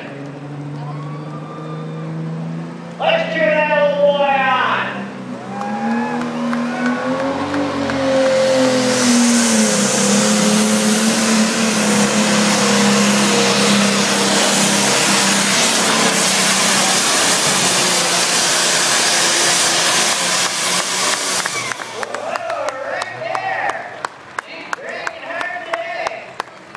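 International Harvester super stock diesel pulling tractor's engine under load pulling the sled: it runs and rises in pitch over the first several seconds, then goes to loud, steady full power from about eight seconds in for some thirteen seconds, and drops off about four seconds before the end as the pull finishes.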